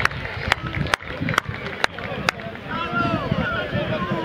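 Distant shouts and calls of football players across an open pitch, growing busier in the second half. Several sharp clicks or taps come in the first two seconds, about half a second apart.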